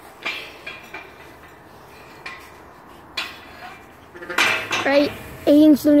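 A few sharp metallic clinks and knocks, spaced about a second apart, from a steel railing gate being handled and climbed.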